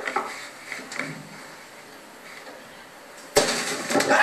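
Knocking on a wooden door in a promotional video's soundtrack, played over a room's speakers: a couple of sharp knocks, then a quieter stretch. A loud sound starts suddenly near the end.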